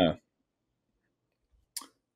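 A man's drawn-out "uh" ending, then a pause of silence broken about two-thirds of the way in by a single short mouth click, the kind a speaker makes parting the lips before going on.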